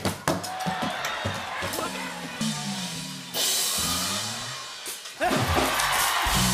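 Metal pails thrown at a wall of glass panels, with a rapid clatter of impacts at the start, then a sudden crash of breaking glass about three seconds in. A studio audience cheers loudly near the end over drum-led live band music.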